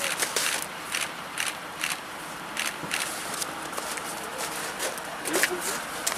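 Irregular crisp crunches of snow, from footsteps and from gloved hands scooping up packed snow.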